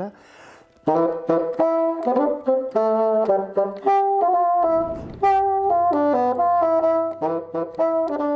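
Bassoon playing a short legato melody in its upper register: a run of held, stepping notes with a brief break for breath about halfway through.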